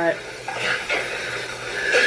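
Water spraying from a garden hose onto the lawn, a steady hiss with some splashing, under faint voices.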